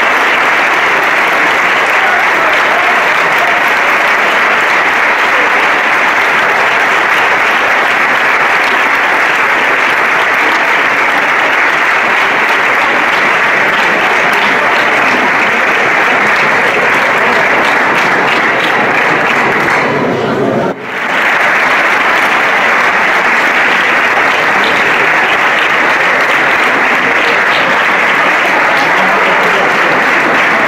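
Audience applauding steadily, a long run of dense clapping that dips briefly about twenty seconds in and then carries on.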